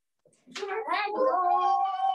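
Several young children calling out together in one long drawn-out shout, starting about half a second in, the pitch rising and then held for more than a second.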